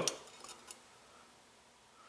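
A few faint, light metallic clicks in the first second as the pan and beam of an RCBS M500 beam powder scale are touched.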